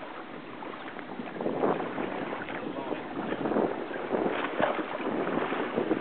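Steady wind and water noise around a small boat, louder after about a second and a half, with indistinct voices and a few light knocks.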